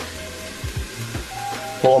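Diced onion sizzling faintly in hot olive oil in a pot, under background music.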